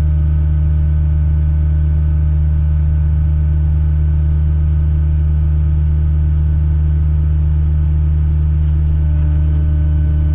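Farm tractor's diesel engine running steadily under load while pulling a disk harrow, heard from inside the cab as a constant drone.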